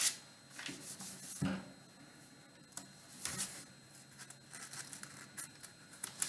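Thin Bible pages being leafed through and turned, a string of short paper rustles with a soft flap about a second and a half in.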